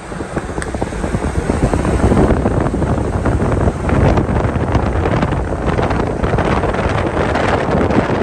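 Wind buffeting the microphone of a phone held at the window of a moving car, with road noise underneath: a loud, gusty rush.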